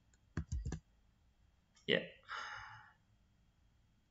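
A quick run of computer mouse clicks in the first second, two of them louder with a dull thud, as the Excel window is split into two panes.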